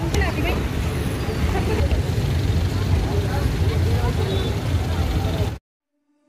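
Busy street ambience: scattered crowd voices over a steady low rumble of traffic, cut off abruptly just before the end.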